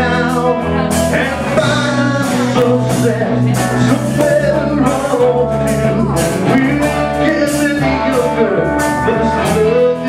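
Folk-rock band playing live: two electric guitars, bass guitar and a drum kit keeping a steady beat with cymbal hits.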